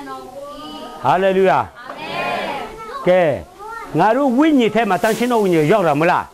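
A young child's voice calling out loudly and repeatedly, in high cries that rise and fall in pitch, sounding like 'apa, papa'. The cries grow into an almost continuous run over the last two seconds.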